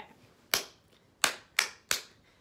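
Four sharp hand claps: one about half a second in, then three in quick succession near the end.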